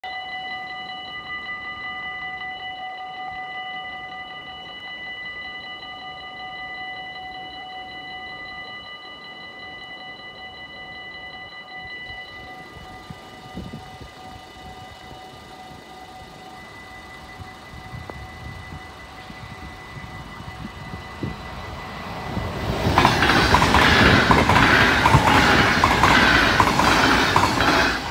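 Level-crossing warning bell ringing steadily with a rapid, even ring. A double-deck electric passenger train approaches, rising to a loud rush of wheels on rails as it passes close by over the last five seconds.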